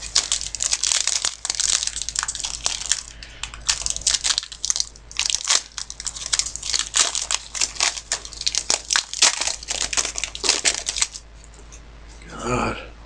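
Plastic card-pack wrapping being crinkled and torn open by hand, a dense run of crackles that stops about eleven seconds in.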